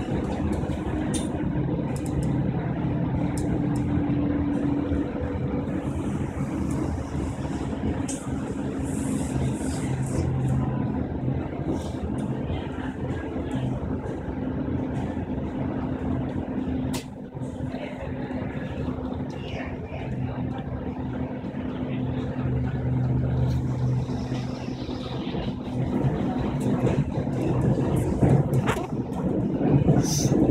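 Cabin of a Renfe Civia electric commuter train running at speed: a steady rumble of the wheels on the track with a constant electric motor hum, getting louder over the last few seconds.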